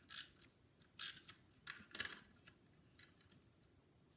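Cardstock being handled and slid into place on a card front: a few faint, short paper rustles and clicks.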